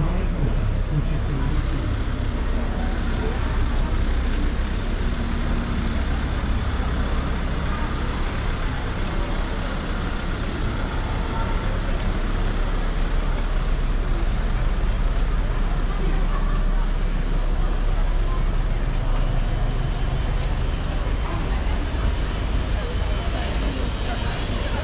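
Busy city street ambience: a crowd of passers-by talking, with a steady low rumble of traffic.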